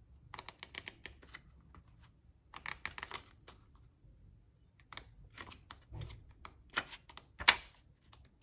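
Pages of a paper swatch book being turned by hand: a run of short crisp flicks and clicks of stiff coloured paper, coming in clusters, the loudest near the end.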